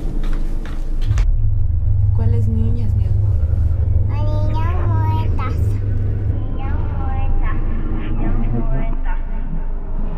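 Loud low rumble of handling noise, with a phone's microphone muffled by fabric, and a child's high-pitched voice heard briefly through it, clearest about four seconds in.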